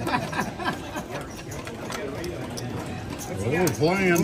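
Background voices and chatter around a card table, with a few faint clicks in the first second and a louder voice near the end.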